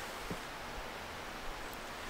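Faint, steady outdoor background noise, an even hiss like light air over leaves, with a small soft tick about a third of a second in.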